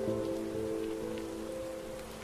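Lofi track: a held chord that slowly fades, laid over a steady crackling hiss of the kind used as rain or record-noise ambience in such mixes.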